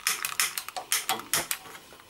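Gas stove's spark igniter clicking rapidly as the burner is lit, about four to five sharp clicks a second, until the flame catches.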